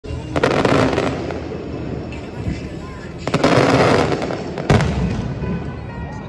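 Fireworks going off: clusters of sharp bangs about half a second in and again around three and a half seconds, each followed by dense crackling and rumble, with a single sharp bang near five seconds.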